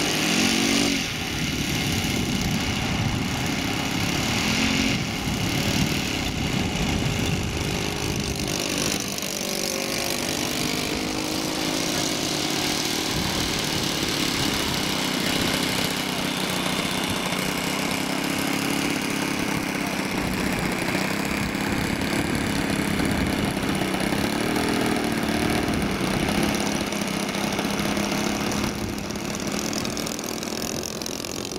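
Large radio-controlled model Spitfire's engine running steadily in flight, its pitch drifting up and down as the plane moves about the sky, with a few abrupt jumps in level.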